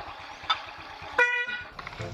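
A motor scooter's horn gives one short, steady beep about a second in, preceded by a single sharp click.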